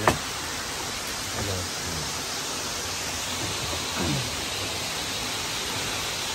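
A steady, even hiss, with a sharp click right at the start and a few faint voices in the background.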